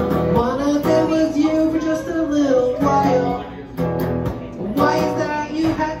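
A man sings live with a strummed hollow-body electric guitar, the vocal coming in phrases with short breaks between them over a steady strum.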